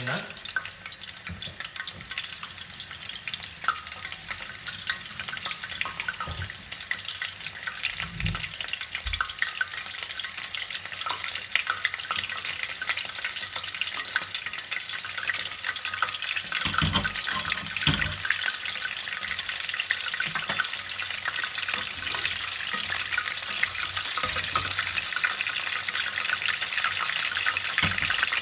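Battered pieces of salt cod (baccalà) deep-frying in a steel pot of oil, giving a steady crackling sizzle. A few dull low thumps come about eight and seventeen seconds in.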